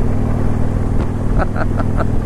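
2015 Harley-Davidson Freewheeler trike's V-twin engine running steadily under way, with a short laugh about one and a half seconds in.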